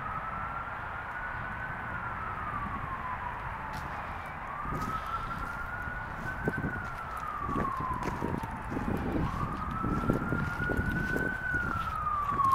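Ambulance siren in a slow wail. Each cycle rises for about two seconds and then falls away, repeating about every four and a half seconds, three times.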